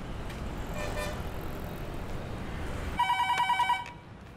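Steady low city-traffic rumble, then, about three seconds in, a landline telephone rings with a rapid electronic trill. The ring is the loudest sound and stops after less than a second.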